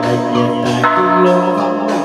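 Instrumental chầu văn ritual music: sustained pitched notes with a few sharp metal percussion strikes that ring on like a bell, one of them about a second in.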